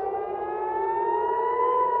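Civil-defence air-raid siren wailing, its pitch rising slowly and starting to fall again near the end: a rocket-attack warning.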